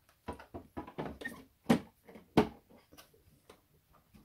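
Plastic knocks and clicks as the water tank of a Bosch Tassimo Vivy 2 coffee machine is fitted back onto the machine, with two louder clunks about halfway through.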